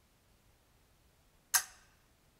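A single sharp metallic snap about one and a half seconds in, with a short ringing tail: the spring-powered blade of a handmade antique-style guillotine mousetrap slamming down as a mouse on top of the trap trips the trigger, setting it off without being caught.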